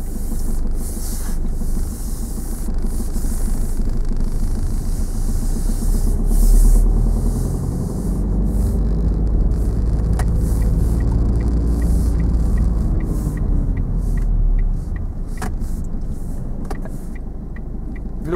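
Car engine and road noise heard from inside the cabin as the car pulls away and drives along, the engine note rising about six seconds in and easing near the end. The turn indicator ticks about twice a second for several seconds midway.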